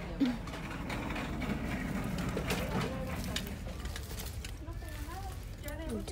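Shop-floor ambience: a steady low hum with faint voices of other people talking in the background, and one short knock just after the start.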